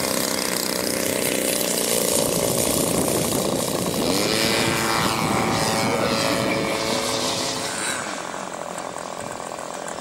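Radio-controlled model aeroplane's engine and propeller running at high power as the model flies past; the pitch falls as it goes by about halfway through. Near the end the sound suddenly becomes quieter and thinner.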